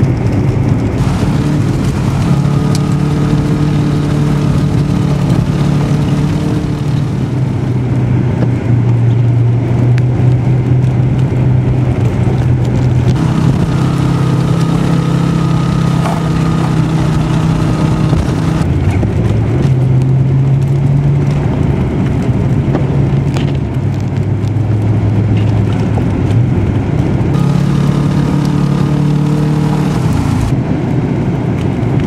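A car engine heard from inside the cabin while driving over snow, running steadily. Its pitch steps up and down every few seconds as the revs change.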